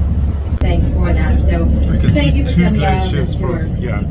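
Someone talking over the steady low drone of a boat's engine.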